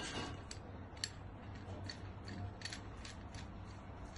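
Faint, irregular light metallic clicks and scraping of a nut being turned by hand onto an anchor bolt.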